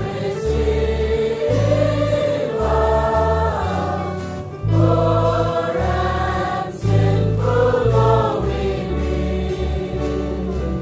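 Choir singing Christian gospel music with instrumental accompaniment, in long held notes over a steady bass line.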